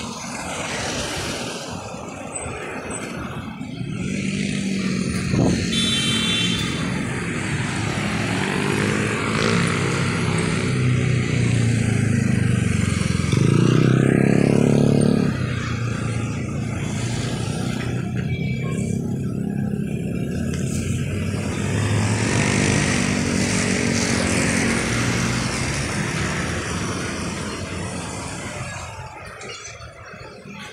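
Road traffic: motor vehicle engines, cars and motorcycles, passing close by, the engine sound swelling and fading several times and loudest about halfway through.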